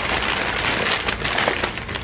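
Plastic snack bags of vegan pork rinds crinkling and rustling as they are handled, a dense, continuous crackle.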